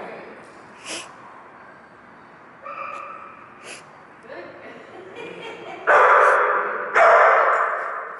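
A dog barking twice, loud and echoing, about six and seven seconds in, after a few fainter yips and sounds earlier on.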